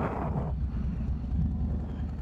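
Harley-Davidson Low Rider S's Milwaukee-Eight 114 V-twin running steadily while riding, a low rumble through a Cobra El Diablo two-into-one exhaust, with wind on the microphone. A brief hiss near the start.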